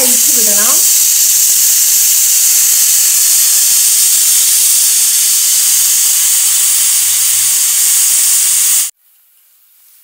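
Steam hissing loudly and steadily from a pressure cooker's vent as the whistle weight is lifted with a spoon to let the pressure out. It stops abruptly near the end.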